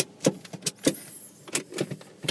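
Handling noise: about seven irregular clicks and knocks as the phone and clip-on microphone are moved about, the first one the loudest.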